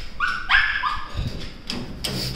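A dog giving short high-pitched yips and whines, about three quick cries in the first second.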